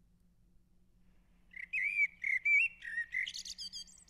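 Birdsong sound effect: a songbird chirping in a quick run of warbled calls, starting about a second and a half in, marking daybreak on the stage.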